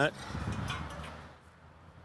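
Concrete block set down on the frame of a homemade yard leveler, a few faint knocks in the first second over outdoor background noise.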